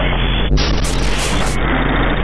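Electronic noise music: a dense, static-like hiss over a steady low hum, its brightness changing in abrupt steps, turning brighter about half a second in and duller again around a second and a half.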